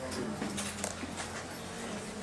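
Classroom background noise: students murmuring among themselves, with several sharp clicks and knocks in the first second.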